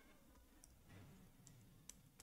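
Near silence: room tone with a few faint, sharp clicks.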